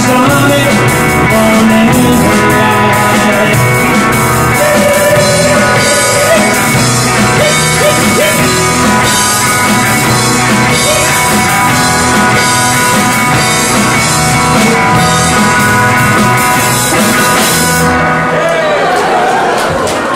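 Live band of electric guitar, bass guitar and drum kit playing the closing bars of an upbeat country-rock song. Near the end the drums and cymbals stop and a held chord rings on.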